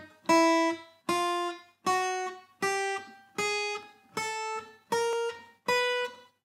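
Acoustic guitar picking single notes one at a time, each a step higher than the last, about one note every 0.8 seconds. It climbs through every note between D-sharp 4 and C5, eight notes in all.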